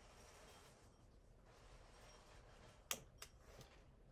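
Mostly near silence. About three seconds in come two short, sharp clicks a fraction of a second apart, then a few fainter ticks, as a piece of heat-resistant tape is pulled and torn off a hand-held tape dispenser.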